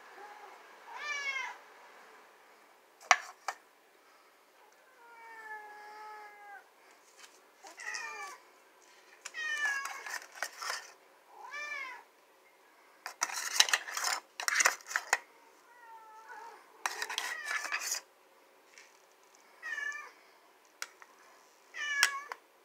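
Pet cats meowing again and again, about ten separate meows, while cat food is served. A metal spoon taps once early on and then scrapes food out of a can into a bowl in two noisy stretches past the middle.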